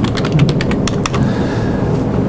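Laptop keyboard typing: a rapid run of keystrokes, sparser after about a second, over a steady low room hum.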